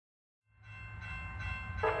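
A train's low rumble fades in after half a second of silence, under a steady chord of held tones. A voice starts singing near the end.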